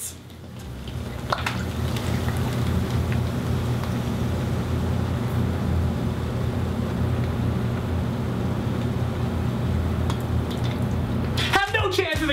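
Liquid poured in a steady stream into a plastic garbage bag, splashing continuously, over a steady low hum.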